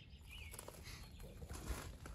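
Quiet outdoor background with a low rumble and a faint bird chirp early on.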